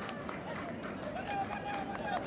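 Distant voices of spectators and players shouting and calling across the football ground, over steady open-air background noise. One call is held longer about a second and a half in.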